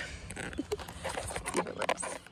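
Camera knocking and rubbing as it is wedged into a makeshift holder, a run of short clicks and scrapes, with a brief laugh.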